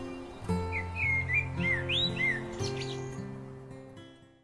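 Background acoustic guitar music, with a run of short rising and falling bird chirps over it from about a second in; the music fades out near the end.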